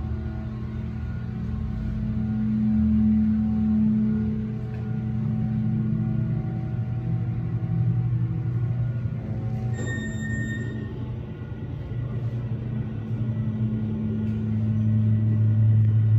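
Freight elevator car in motion: its drive machinery gives a steady, loud hum with several fixed tones. About ten seconds in, a single high electronic beep sounds for about a second.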